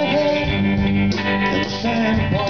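Live country-blues band playing an instrumental passage near the end of a song: electric guitar leads over bass guitar and drums.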